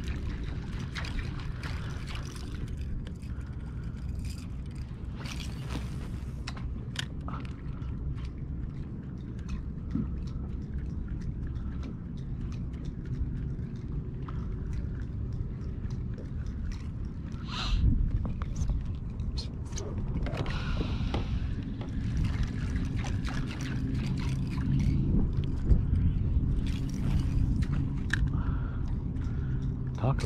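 Water sloshing and gurgling against a kayak's hull over a steady low rumble, with scattered small clicks and knocks and one louder rush of sound about 18 seconds in.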